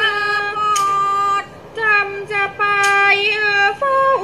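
A woman singing a Thai classical song in long held notes with wavering ornaments. The line breaks off briefly about a second and a half in, then resumes.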